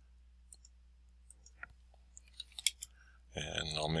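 Faint, scattered computer mouse clicks, a few in the first two seconds and a quick run of them about two and a half seconds in, over a low steady hum. A man starts speaking near the end.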